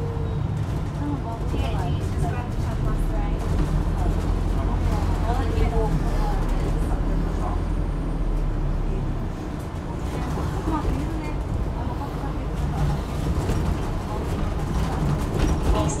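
Inside an Alexander Dennis Enviro400H MMC hybrid double-decker bus on the move: a steady low rumble of the drivetrain and road that eases briefly about halfway through and then builds again, with faint passenger chatter above it.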